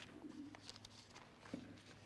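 Near silence: room tone with faint rustling of thin Bible pages being leafed through by hand.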